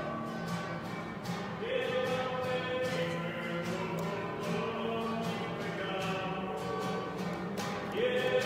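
Communion hymn: voices singing with instrumental accompaniment, a new phrase starting about two seconds in.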